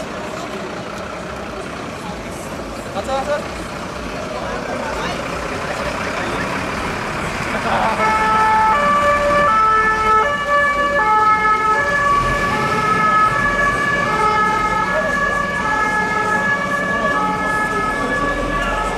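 German two-tone emergency siren (Martinshorn) on a Red Cross emergency doctor's car, starting about eight seconds in and stepping back and forth between a high and a low tone as the car passes. Before it starts there is a busy mix of crowd and street noise.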